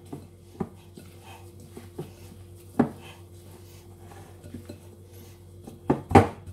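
Hands kneading a chickpea fritter mixture in a glass mixing bowl, with about four sharp clinks and knocks from the bowl, the loudest nearly three seconds in. A steady low hum runs underneath.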